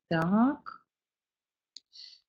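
A woman's voice briefly, one short sound rising in pitch. Near the end comes a sharp click and a short hiss from a mouse click advancing the presentation slide.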